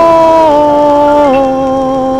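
A 1950s vocal group record playing from a 78 rpm disc: a held chord of several sustained notes that steps down in pitch twice, with no words sung.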